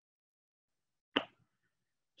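Dead silence broken by a single short click about a second in, with a faint trace after it.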